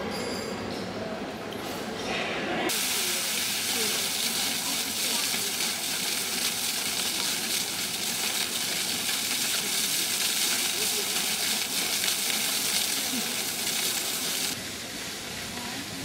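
Water jet of the Singing Fountain spraying and splashing into its basin: a steady, dense hiss that starts suddenly about three seconds in and stops near the end.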